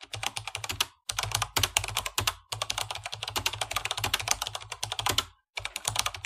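Computer keyboard typing sound effect: rapid key clicks, several a second, in four runs broken by three brief pauses.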